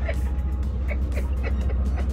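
Steady low rumble inside a moving car's cabin, with women laughing in short pulses over it.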